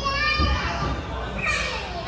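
Young children's high-pitched voices calling out wordlessly as they play on a play-structure slide.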